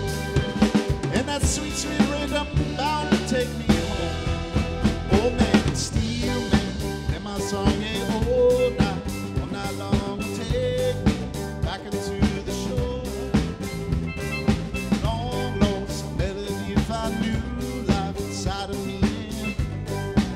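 Live band playing an instrumental passage with no vocals. A drum kit keeps a steady beat of snare, rimshots and bass drum under steel pan, electric bass and a small acoustic guitar, with a lead line that slides between notes.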